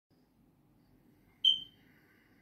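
A single short, high-pitched electronic beep about one and a half seconds in, fading quickly, over a faint low hum.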